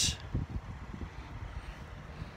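Wind buffeting the microphone outdoors: an irregular low rumble with a faint hiss above it.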